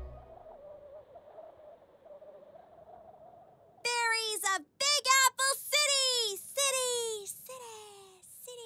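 After a faint, quiet stretch, a high cartoon girl's voice makes a run of short wordless vocal sounds from about four seconds in, each syllable sliding down in pitch.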